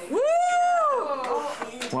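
A person's high, drawn-out "woo!" cheer that rises, holds and falls over about a second, greeting the blowing-out of birthday candles.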